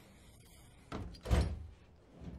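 A single heavy, dull thud about a second and a half in, with a brief swish leading into it.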